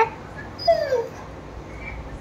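A dog whining: the end of one whine right at the start, then a short whine that falls in pitch about three-quarters of a second in.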